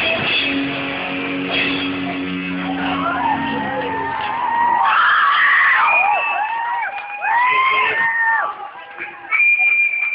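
Rock band playing live, letting its final chord ring out; the chord slides down in pitch and stops about halfway through. Over and after it come high wailing, rising-and-falling squeals and some shouting.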